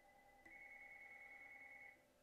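A faint, steady electronic tone on two held pitches, one high and one lower. It steps up in level about half a second in and cuts off after about a second and a half.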